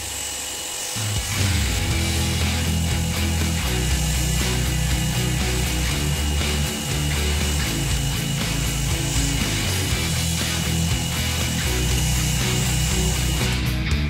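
A pressure washer (jet cleaner) running, with a steady high whine and the hiss of its water spray as foam is rinsed off a car, stopping shortly before the end. Rock music with electric guitar plays over it.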